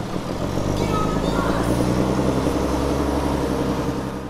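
Motor vehicle engine running, a low hum of stacked tones that grows louder toward the middle and fades near the end.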